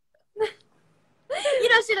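Speech: a young woman talking in Japanese, after a single short vocal sound about half a second in and a pause.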